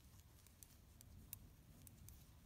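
Near silence with a few faint ticks of knitting needles clicking together as stitches are knitted.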